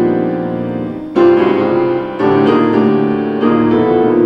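Grand piano playing slow, sustained chords that ring on, with a new chord struck about a second in, another a second later and one more near the end.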